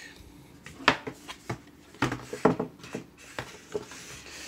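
Cardboard laptop packaging being handled: a few sharp knocks and short scrapes as the box and its inner packing are moved, the loudest knock about a second in.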